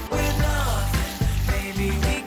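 Background music: a song with a melody over a steady low beat.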